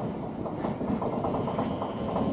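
Running noise of a rubber-tyred New Tram automated guideway train, heard from inside the front of the car as it travels along the guideway: a steady rumble.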